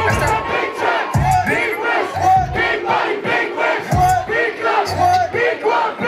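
A packed club crowd shouting along to a hip-hop track at a live show, with many voices at once over deep bass notes that come in and drop out every second or so.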